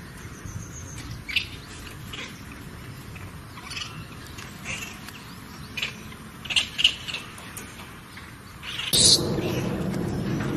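A baby macaque giving short, high-pitched squeaking calls, about eight of them spread across several seconds, two close together near the seven-second mark. Near the end a sudden loud, low rumbling noise sets in and continues.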